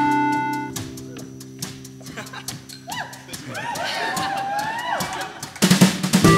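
Live band music in a quiet passage between song sections: a held keyboard chord dies away over soft ticking percussion, then overlapping gliding, swooping tones rise and fall. A loud strum comes in near the end.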